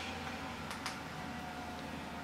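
Two faint clicks in quick succession, a little under a second in, over a steady low room hum: buttons pressed on the TV box's remote control as the menu moves on.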